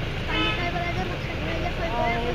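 A vehicle horn toots briefly about a third of a second in, over the talk of a crowd.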